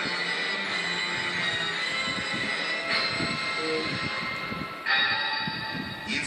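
Background music played through a television's speaker: sustained high synthesizer chords that change about three seconds in and again near the end.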